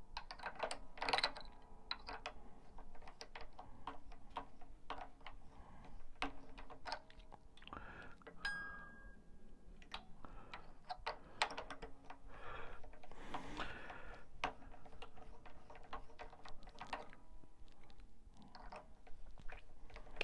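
Light, irregular clicks and rattles of guitar strings being wrapped around the tuning posts of a small three-quarter-size Stagg acoustic guitar and turned with a string winder, with strings ringing faintly now and then.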